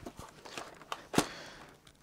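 Light handling noises from a plastic RC truck chassis being moved on a bench: a few soft clicks and taps, one sharper click about a second in, then faint rustling.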